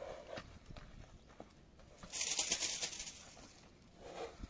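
Silesian horse moving around on a longe line over soft dirt, its hoofbeats dull scattered thuds. About two seconds in comes a loud, high-pitched chattering burst lasting about a second, like birds chirping.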